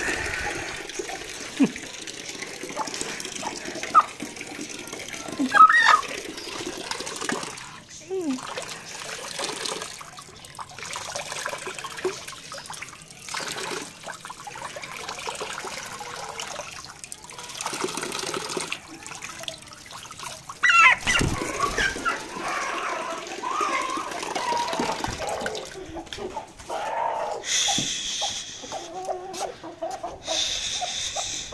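Tap water running and splashing onto a broody hen held under the spout, a soaking meant to break her broodiness. The hen gives a few short squawks, and near the end chickens cluck.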